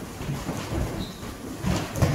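Rumbling and knocking from a human foosball game: players' feet shuffling and thudding on the floor as they shove along the poles they are strapped to, with a heavier thump near the end.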